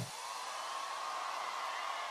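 A steady, even rushing noise with no pitch or rhythm, fairly quiet.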